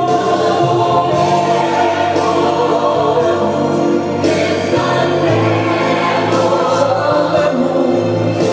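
A Christian gospel song with a choir singing, running steadily.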